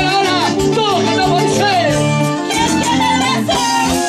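Live band music with a woman singing into a microphone, her voice sliding between notes over stringed instruments and a steady bass line.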